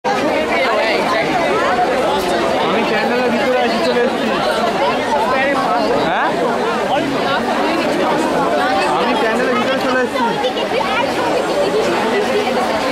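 Crowd chatter: many people talking at once, overlapping voices with no single speaker standing out, at a steady level.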